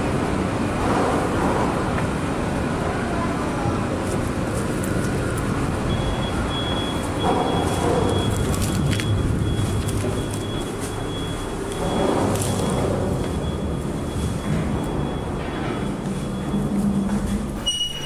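Steady low rumbling noise inside the steel bridge girder, swelling a little a few times, with a faint thin high tone through the middle.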